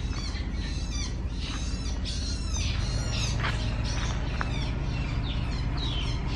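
Small birds chirping, many short quick calls throughout, over a steady low hum.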